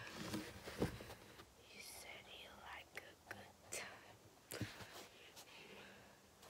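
Faint whispering, broken by a few soft, sharp clicks and taps from a felt-tip marker being worked and handled.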